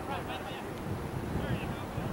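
Distant voices shouting on the pitch, with wind rumbling on the microphone.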